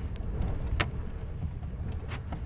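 Steady low rumble of wind on the microphone, with a few short sharp taps and scrapes as paint is worked onto sketchbook paper by hand. The loudest tap comes a little under a second in.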